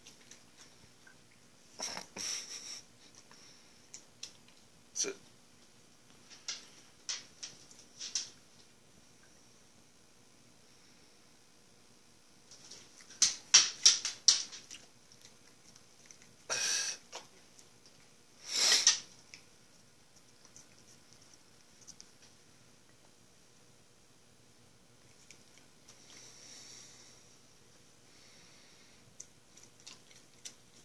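Siberian Husky eating fish off chopsticks: scattered short clicks and smacks of its mouth and teeth on the sticks and the food. The loudest is a quick run of clicks about halfway through, followed by two longer noisy sounds a few seconds later.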